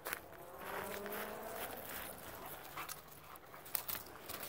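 A dog giving a short, faint whine about a second in, amid the knocks of footsteps and paws on dry ground.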